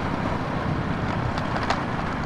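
Motorcycle running at road speed on a dirt road: a steady engine drone under an even rush of wind and tyre noise.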